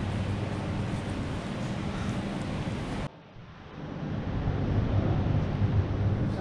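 Steady background noise of an indoor space with a constant low hum. It cuts off abruptly about halfway, drops briefly, then builds back to the same kind of steady noise at an edit.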